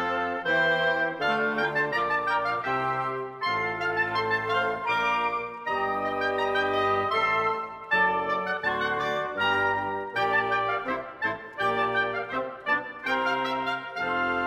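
Orchestral woodwind section (flutes, oboes, clarinets and bassoons) playing a passage together, with notes that change quickly and several instruments sounding at once.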